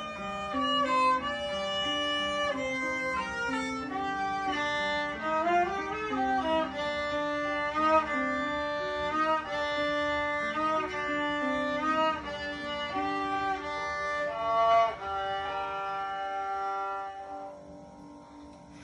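Solo violin playing a melody, with vibrato on several held notes. It closes on a long note that fades out near the end.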